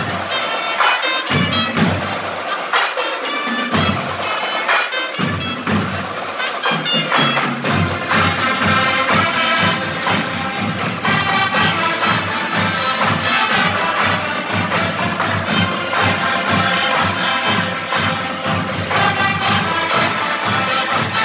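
Marching band of brass and drums playing live, brass chords over percussion. The low bass comes in and out at first, then settles into a steady, full beat from about eight seconds in.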